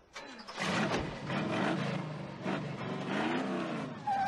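1968 Chevrolet Chevelle's engine revving hard as the car accelerates away, its pitch rising and falling.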